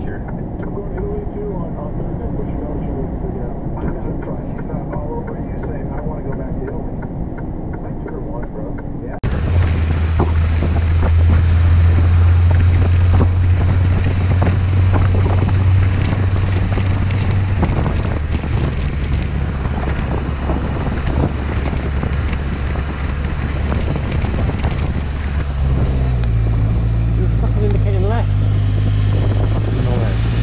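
Vehicle cabin drone from a dashcam while cruising on a highway. After a sudden cut about a third of the way in, a motorcycle engine runs steadily with wind buffeting the microphone, its pitch stepping up near the end.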